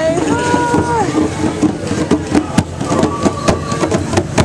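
Busy crowd chatter with a drawn-out vocal call about the first second, then sharp, irregular hand strikes on djembe drums through the rest.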